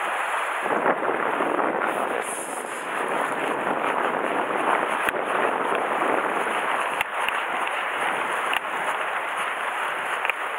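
Sea surf washing and foaming against shoreline rocks: a steady rush, with wind on the microphone. A few sharp clicks stand out, about five, seven and eight and a half seconds in.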